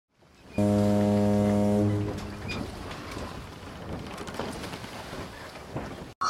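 A ship's horn sounds one low blast lasting about a second and a half, then a steady rushing noise remains.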